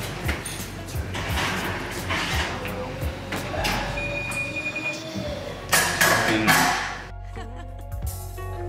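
Background music with a steady beat; over it, an oven door and rack opening and a glass baking dish handled and set down on a metal wire rack, with a louder clatter about six seconds in.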